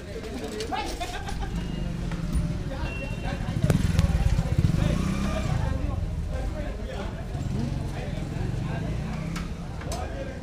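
Busy market street ambience: people's voices chattering, with a small vehicle engine running close by that grows louder to a peak about four seconds in and then fades back.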